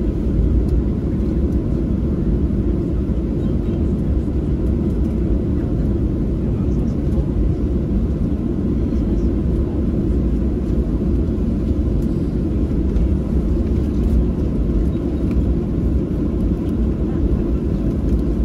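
Steady low rumble inside the cabin of a Boeing 737-800 taxiing after landing, from the idling engines and the wheels rolling on the taxiway.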